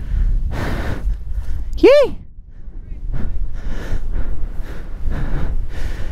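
Wind rushing over the microphone of a flying paraglider pilot, a steady low rumble that swells and fades. About two seconds in, one short vocal exclamation whose pitch rises and then falls.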